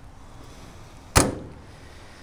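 A metal side compartment door on a pickup's utility bed is slammed shut: one sharp bang about a second in, with a short ring-out.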